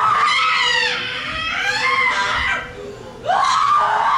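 A performer's voice giving loud, high-pitched screaming cries that bend up and down in pitch, in two long outbursts with a short break about three seconds in, acted as the pains of childbirth.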